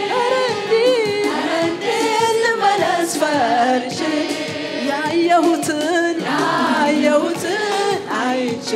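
A worship team singing together, a woman's lead voice carrying wavering, ornamented lines over the group.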